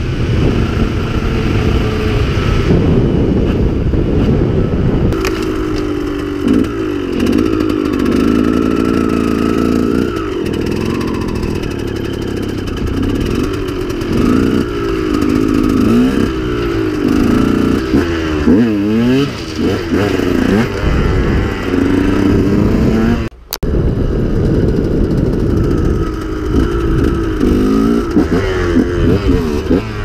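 2009 KTM 125 EXC Six Days two-stroke single-cylinder dirt bike being ridden, the engine note rising and falling again and again as it revs up and backs off. The sound breaks off for a moment about three-quarters of the way through.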